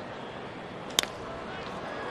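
Crack of a wooden baseball bat meeting a pitched four-seam fastball, one sharp crack about a second in, over a steady hum of ballpark crowd noise. It is a hard-hit line drive.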